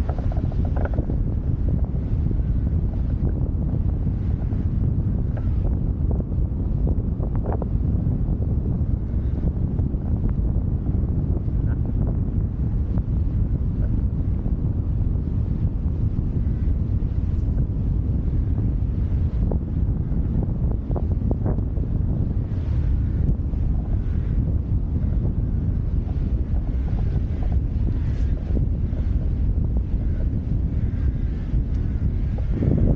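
Wind buffeting the microphone: a steady low rumble, with a few faint clicks.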